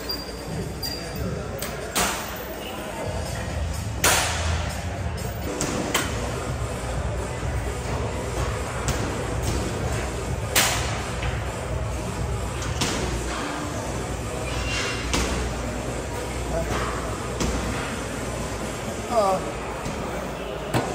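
Cable machine weight stack clanking during lat pulldown reps, a sharp knock every few seconds, over gym background chatter and music.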